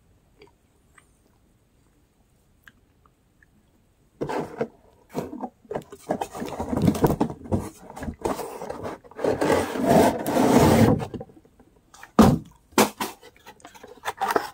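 Reese's gift-pack packaging being handled and torn open: a few seconds of near quiet, then about seven seconds of dense rustling and crinkling, ending in a few sharp snaps.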